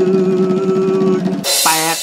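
Drum-roll sound effect under a man's drawn-out vocalised 'tueed' note, ending in a cymbal crash about one and a half seconds in: the build-up to a reveal.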